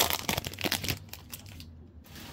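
Foil trading-card pack wrapper crinkling as it is torn open and pulled off the cards. The crackling is loudest at the start and thins out after about a second.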